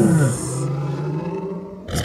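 A man's low, drawn-out vocal sound without words, falling in pitch at the start and then held on one low note for over a second.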